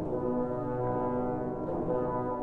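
Trombone ensemble playing slow, sustained chords, the harmony shifting to a new chord just under two seconds in.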